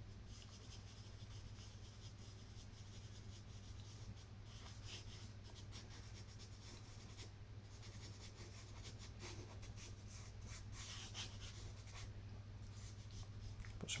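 Stick of charcoal scratching and rubbing across tinted paper in faint, short drawing strokes, busier about a third of the way in and again near the end, over a steady low hum.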